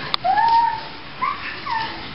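Golden retriever whining: one long whine that rises and then holds, followed by two short falling whines, with a sharp click just before the first.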